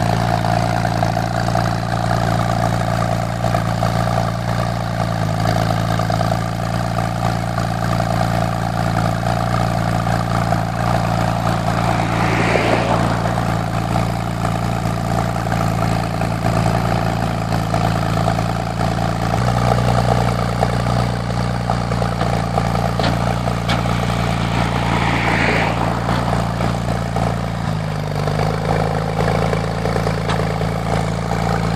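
Porsche 996 Turbo's twin-turbo 3.6-litre flat-six idling steadily through an AWE Tuning aftermarket exhaust. Its idle note shifts slightly about two-thirds of the way in and again near the end.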